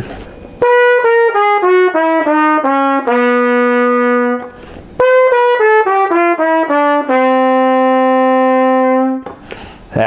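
Trumpet playing two descending scale runs, each stepping down through about eight notes to a held low note: first the low D, then the low C-sharp, held longer. The third valve slide is kicked out on these low notes to pull them down into tune, since both run sharp.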